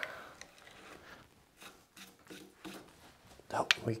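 Faint scraping and ticking of an auger bit turning in softwood as it is backed out of a hole just bored through the board.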